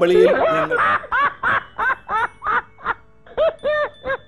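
A man's exaggerated comic laughing: a loud run of short, high-pitched bursts about three a second, with music underneath.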